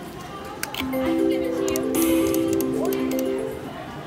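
Video slot machine's reel-spin tune: a stepping melody of electronic tones that starts about a second in as the reels spin, with scattered clinks behind it.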